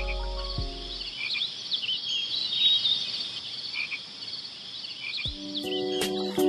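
Night chorus of frogs and insects: many small high-pitched chirps overlapping steadily. The background music fades out about a second in, and a strummed guitar piece starts near the end.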